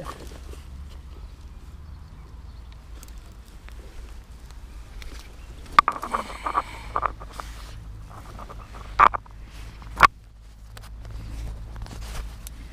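Handling sounds of a perch being lifted from a landing net and unhooked: rustles and a few sharp clicks and knocks in the second half, over a low steady rumble.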